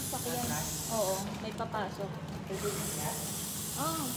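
A steady hiss with brief, faint snatches of voices over it. The hiss thins out for about a second in the middle.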